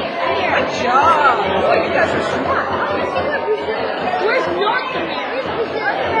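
Indistinct chatter of many children's voices talking over one another at once, with no single voice standing out.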